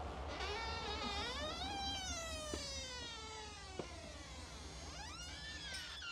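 A shop door's dry hinges squeaking as the door swings: one long squeal that rises, then slowly falls, and a second shorter squeal near the end. The hinges want lubricating.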